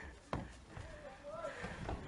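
Trainers thudding on a skate half-pipe ramp as a man runs up it and scrambles onto the top, with a sharp thump about a third of a second in. A faint voice calls out in the middle.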